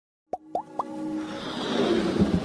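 Animated intro sound effects: three quick pops, each gliding upward in pitch, about a quarter second apart, followed by a swelling whoosh over a held musical note.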